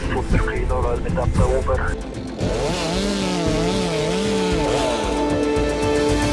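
A few spoken words, then from about two and a half seconds in a chainsaw running with its pitch swinging up and down as it cuts through the spruce's trunk, over background music.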